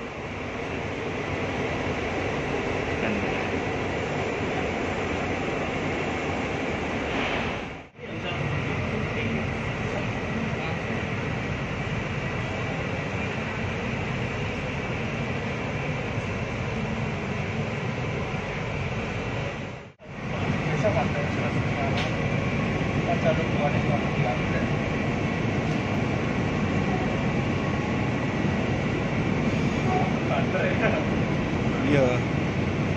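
Steady running noise inside an electric commuter train carriage, a dense rumble with a faint steady hum. It fades out and back in twice, at about 8 and 20 seconds, and is a little louder after the second break.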